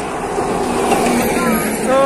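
Road traffic passing on a highway: a steady rush of vehicle tyre and engine noise, swelling slightly in the middle.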